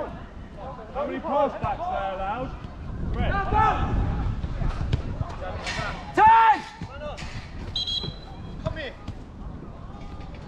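Five-a-side footballers shouting to each other across an outdoor pitch, with sharp thuds of the ball being kicked. One loud call comes about six seconds in.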